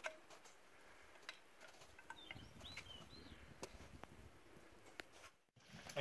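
Near silence, broken by a few faint clicks of boots and loose stones on rock as people scramble over a rocky slope, and a short run of faint high chirps in the middle.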